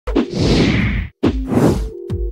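Two whoosh sound effects, each opening with a sharp hit and a low thud, the second coming about a second after the first.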